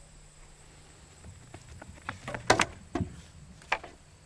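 A pole vaulter's short run-up: quick footsteps on the runway, coming faster, then a loud sharp clack about two and a half seconds in as the pole is planted in the box. A few softer knocks follow as she takes off and swings up on the pole.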